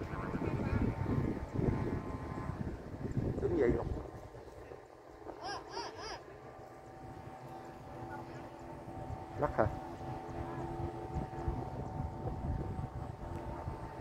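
Wind buffeting the microphone for about the first four seconds, then a faint steady drone of several held tones, the sound of a Vietnamese flute kite's (diều sáo) bamboo flutes singing in the wind aloft. A few brief distant voices break in.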